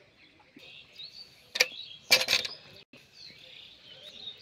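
Metal kitchenware clanking: one sharp clank about a second and a half in, then a short rattle of clanks half a second later. Small birds chirp throughout.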